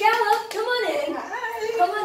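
Excited, high-pitched women's and girls' voices exclaiming without clear words, overlapping in a greeting.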